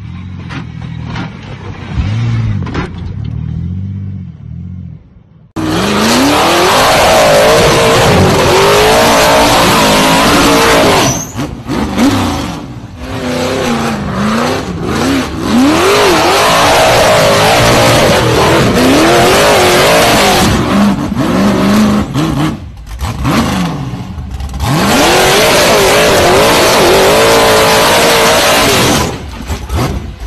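A truck's engine accelerating, then from about five seconds in a tube-frame off-road buggy's engine revving hard. Its pitch rises and falls over and over, and it drops away briefly several times as the throttle comes off.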